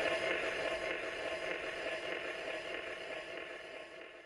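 Surface hiss of a spinning gramophone record after the tune has stopped, fading out gradually.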